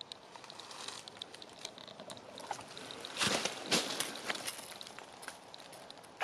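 Footsteps rustling through dry fallen leaves and brush, with scattered small clicks and twig snaps and two louder rustles a little past halfway.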